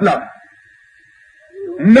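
A man preaching in Urdu through microphones. His voice stops shortly after the start, and after a pause of about a second it resumes near the end. A faint steady high tone runs under the pause.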